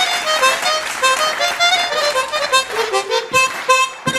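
Harmonica solo played into a microphone: a quick run of short melodic notes stepping up and down.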